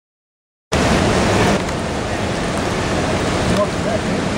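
River water rushing and churning over rocks: a loud, steady rush that cuts in suddenly about a second in.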